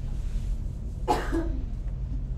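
A person coughs once, briefly, about a second in, over a steady low hum.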